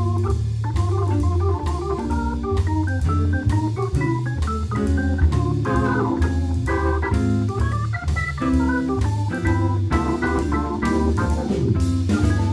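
Jazz organ combo playing: the organ carries a quick lead line over a steady bass line, with drum kit and cymbals underneath and electric guitar beside it; the baritone saxophone is resting.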